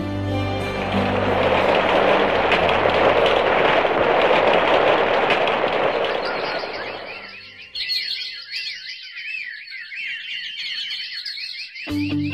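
A scene-bridge sound effect in a radio drama: a loud, dense rushing noise for about seven seconds over a low steady hum. It fades into a few seconds of rapid, high warbling chirps, cut off suddenly at the end as guitar music comes in.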